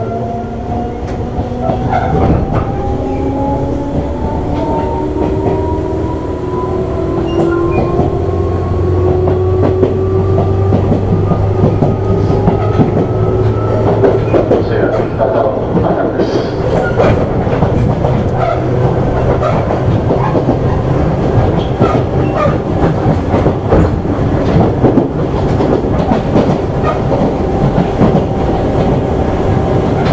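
Tobu 8000 series motor car (MoHa 8850) accelerating, its traction motor whine climbing steadily in pitch for about the first half, then running at speed with the wheels clacking over rail joints.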